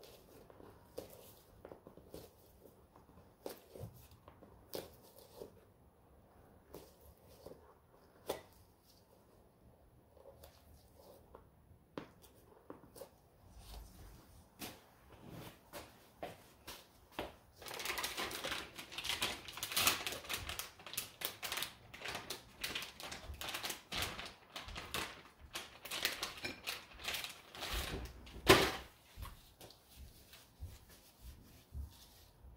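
Resin mixing cups being wiped out by hand to clear out leftover wet resin and glitter. There are scattered light taps and clicks at first, then a long stretch of close rubbing and scraping from a little past halfway, ending in a sharp knock near the end.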